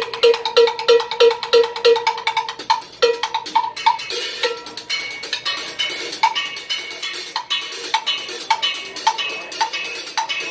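Drum kit played live: quick, even strikes on a high-pitched drum, about three a second, then a busier pattern with cymbals from about four seconds in.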